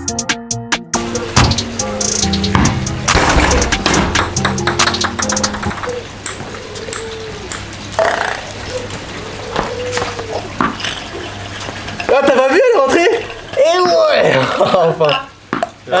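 Background music under a run of sharp clicks: a ping-pong ball bouncing on hard surfaces. Near the end come loud, excited wordless exclamations.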